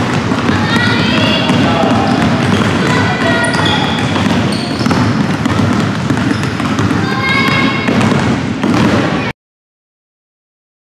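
Several basketballs being dribbled on a hardwood gym floor, with girls' voices and chatter mixed in. The sound cuts off suddenly near the end.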